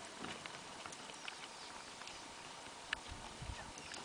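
Faint scattered ticks and rustles of a warthog feeding and stepping over dry leaves and twigs, with a sharper tick about three seconds in and a couple of low thumps just after.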